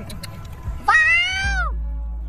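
Background music, with one high-pitched, meow-like call about a second in that rises and then falls in pitch over less than a second.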